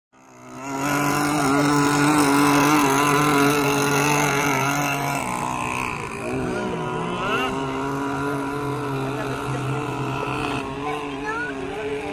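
Small gasoline two-stroke engines of radio-controlled racing boats running flat out: a loud, steady high buzz with a slightly wavering pitch. It comes in about half a second in, is loudest for the first few seconds, then eases and fades near the end as the boats move away.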